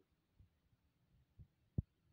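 A few soft, dull knocks as a table knife cuts down through a spongy rasgulla onto a ceramic plate, the loudest and sharpest one near the end.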